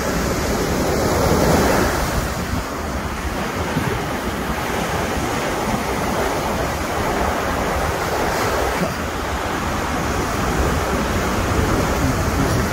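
Steady rushing of ocean surf and wind, with wind rumbling on the microphone; it swells briefly about a second in.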